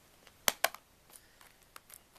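Plastic DVD case handled by hand: two sharp clicks close together about half a second in, then a few faint ticks.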